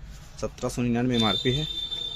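A steady high-pitched electronic beep tone, starting about a second in and held for over a second, over a man's voice.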